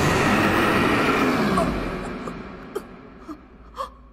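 A giant fox monster's roar, an anime sound effect, dying away over about two and a half seconds with its pitch sliding down, followed by a few faint ticks.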